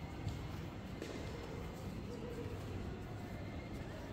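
Outdoor background noise: a low, steady rumble with no distinct events.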